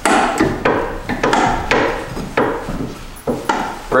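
Repeated knocks and creaks, roughly two a second with a sharper one near the end, from the brake linkage of an old Harley-Davidson golf cart being worked to check that the brakes function.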